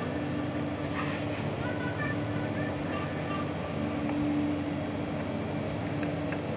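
Steady background noise with a low hum, and faint short high chirps now and then.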